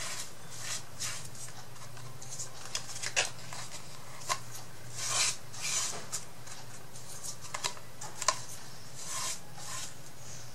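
Small paintbrush brushing and scraping along the edges of a painted MDF wooden frame, in short irregular swishes with light clicks and taps as the frame is turned in the hands.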